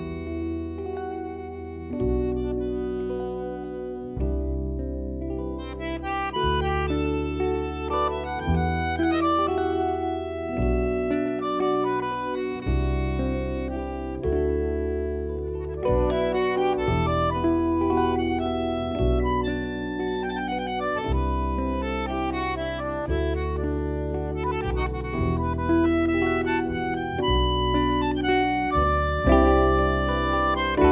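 Tango ensemble playing an instrumental passage without vocals: a bandoneon's reedy melody over violin and keyboard, with deep bass notes changing about every two seconds.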